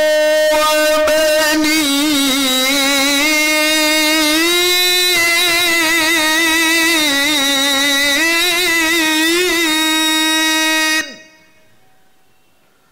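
A man's solo voice reciting the Qur'an in the melodic tilawah style through a microphone: one long phrase of held notes with wavering melismatic turns, rising in pitch in the middle. It ends abruptly about eleven seconds in, leaving a short fading echo.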